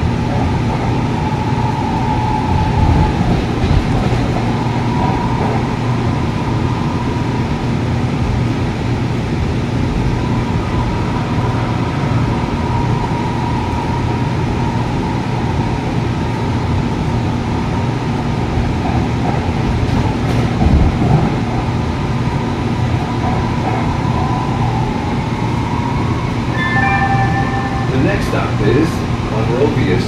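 Interior running noise of an AnsaldoBreda P2550 light rail car at speed: a steady rumble with a faint whine wavering above it. Near the end a short two-tone chime sounds as the onboard stop announcement begins.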